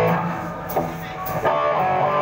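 Live rock band playing: electric guitar chords over bass, with a couple of sharp drum or cymbal hits.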